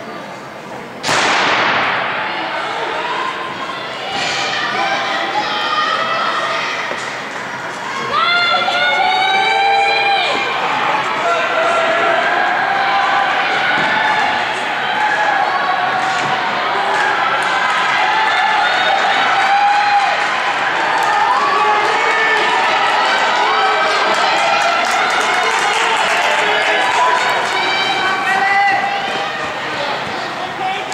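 A single starting-pistol shot about a second in, echoing through a large indoor hall, followed by spectators and teammates shouting and cheering on the sprinters for the rest of the race.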